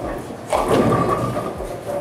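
A light six-pound bowling ball hits the pins about half a second in, and the pins clatter down.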